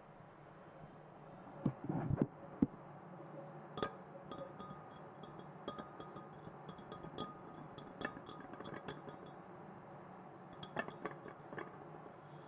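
Fingers tapping and handling a handmade glass vessel: light clinks and taps scattered throughout, with a few louder knocks around two seconds in. A faint steady tone runs for a few seconds in the middle.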